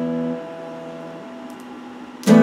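Electric guitar chord ringing out and fading after a strum, its low notes dying away partway through.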